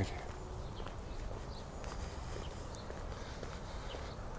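Faint footsteps on dry ground and leaf litter, a few soft irregular steps over a low steady rumble.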